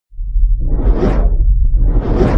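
Intro sound effect: a whoosh that swells to a peak about a second in and then fades, over a deep steady rumble.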